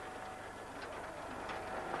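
Steel roller shutter coming down over a shop doorway, a steady low rattling that grows a little louder near the end.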